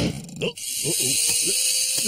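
A sharp click, then about half a second in a steady high hiss starts and keeps going. Over it a man grunts several times in short rising sounds.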